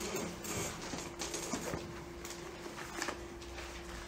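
Faint handling noise: scattered soft clicks and rustles over a low steady hum.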